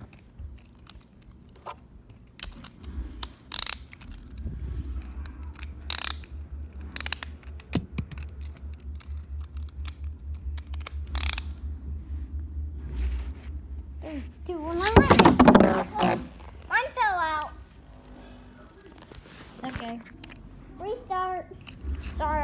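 Scattered small clicks and low rumbling handling noise close to the microphone. A child's voice calls out loudly in wordless, wavering tones about fifteen seconds in, and again near the end.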